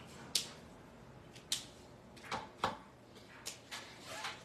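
About half a dozen light, short clicks and taps of Copic alcohol markers being handled: plastic marker caps and barrels knocking against each other and against a plastic marker holder.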